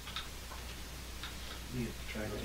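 Quiet room tone: a steady low hum with a few faint, scattered clicks. A man says "yeah" near the end.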